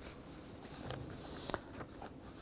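Faint rustling with a few soft clicks, a little louder about a second and a half in.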